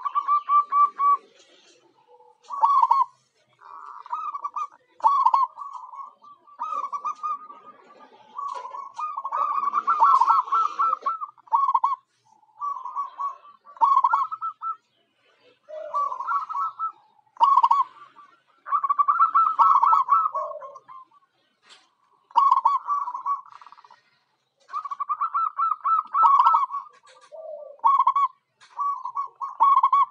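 Zebra dove (perkutut) calling again and again: short bursts of rapid, trilled cooing notes, each lasting up to about two seconds with brief gaps between, and a few lower notes now and then.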